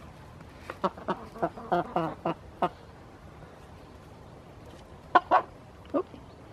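Domestic chickens clucking: a quick run of short clucks in the first few seconds, then two more near the end.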